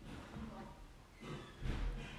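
Kitchen knife cutting a sheet of puff pastry into strips on a wooden cutting board: a few faint, soft thuds of the blade pressing through onto the board, the loudest near the end.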